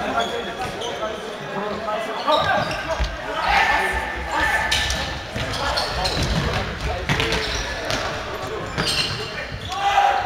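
Ball being kicked and bouncing on a sports-hall floor during an indoor football match, a sharp knock every second or two, with players and spectators shouting in the echoing hall.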